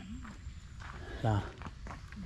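Footsteps on a dirt forest trail strewn with dry leaves, a few short steps in a walking rhythm.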